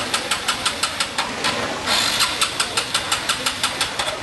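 Small motorbike engine running with a regular putting beat, about six a second, with a short hiss about two seconds in.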